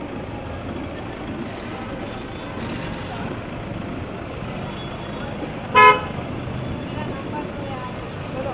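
One short car horn toot, well above a steady background of street traffic noise.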